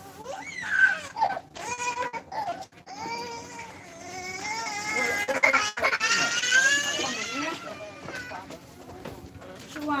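A person wailing and sobbing in grief at a body's viewing: drawn-out cries whose pitch rises and falls, broken by a few short gasps.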